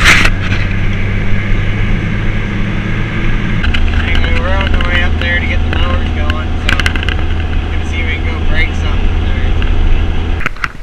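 Vehicle engine and road noise heard from inside the cab while driving: a steady low drone that steps to a slightly different pitch about three and a half seconds in. There is a sharp loud noise at the very start, and warbling higher-pitched sounds over the drone in the middle.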